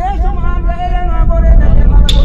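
Loud channel outro sting: a deep, steady bass under a wavering, voice-like pitched tone that bends up and down.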